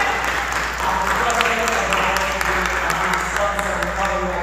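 Audience applauding, a dense run of hand claps with voices heard through it.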